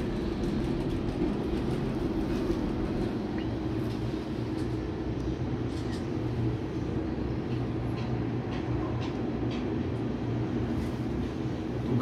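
Steady low rumbling hum inside a moving cable car gondola as it runs along its cable, with a few faint clicks.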